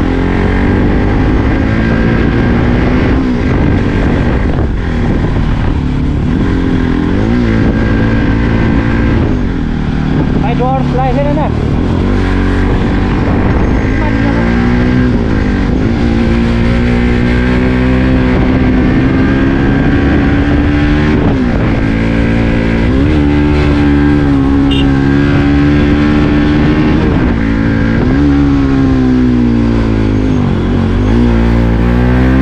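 Bajaj Pulsar NS200's single-cylinder engine pulling hard uphill, revving up and dropping back again and again as the throttle is opened and closed and the gears change.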